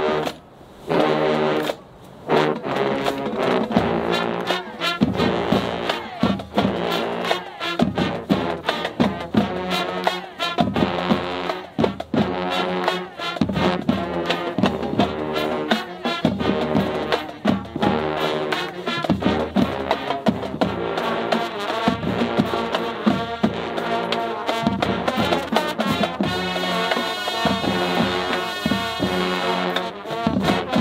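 Marching band playing live: brass and drums in short punched chords for the first couple of seconds, then a continuous loud rhythmic tune, turning brighter with more cymbal-like sizzle near the end.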